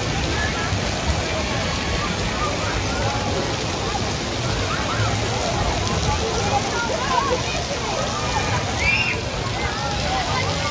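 Steady rush of splashing, running water from a children's water play area, with a crowd's voices over it, children calling out and squealing here and there, more of it in the second half.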